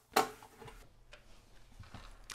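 One sharp click just after the start, then faint scattered ticks: hands working the old SCSI hard drive loose in the NeXTcube's metal drive cage.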